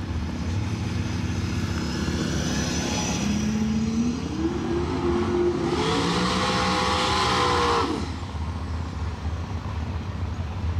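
Big-turbo Chevy pickup engine revving hard during a burnout, its rear tires spinning on the pavement. The engine pitch climbs from about three seconds in, holds high with a loud hiss for about two seconds, then drops off suddenly near eight seconds and settles back to a rumble.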